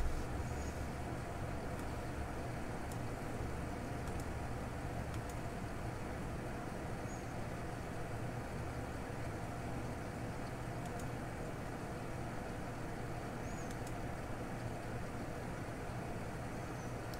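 Steady low hum of room tone, unchanging throughout, with no handling or other distinct sounds.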